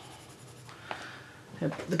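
Tombow Irojiten coloured pencil shading on paper: a soft, steady scratching, with a small tick about a second in.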